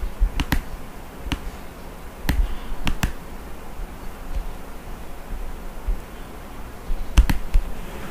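Computer mouse clicks: several sharp, separate clicks, with a pause of about four seconds in the middle and a quick pair near the end, over a low background hum.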